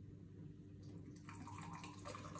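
Beer poured from a can into a glass: a faint liquid trickle that grows a little about a second in.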